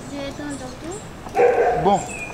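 A short, loud burst of sound about one and a half seconds in, followed at once by a voice saying 'bon'; faint voices before it.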